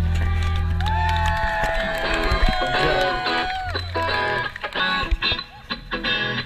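Live band music from an outdoor stage PA: steady bass notes with a sliding lead line and a voice over it, growing quieter and choppier near the end.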